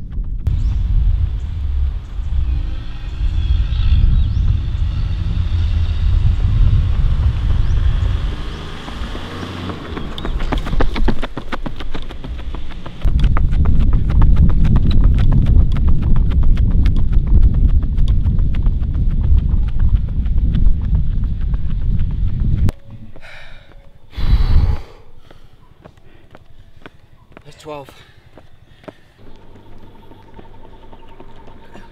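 Heavy wind rumble on the microphone along with quick, even footfalls of running shoes on an asphalt road during an uphill sprint. The rumble cuts off suddenly about three quarters of the way through, and a short loud burst follows a couple of seconds later.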